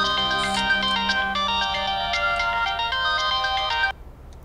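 Smartphone ringtone playing a quick, repeating run of chiming notes, loud and bright, cutting off abruptly near the end as the call is answered.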